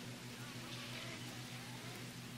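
Faint steady electrical hum with a constant hiss: the background noise of an old recording, with no speech.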